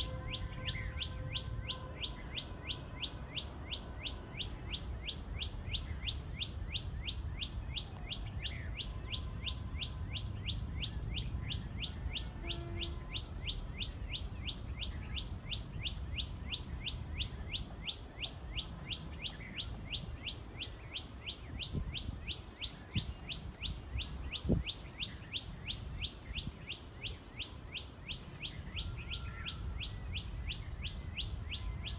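A bird repeats one sharp call note about three times a second in a long, unbroken series. A few higher chirps from other birds come and go over a low rumble, and there is one thump about two-thirds of the way through.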